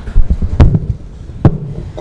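A few sharp knocks and thumps: a cluster in the first second, the loudest a little past half a second in, then one more about a second and a half in.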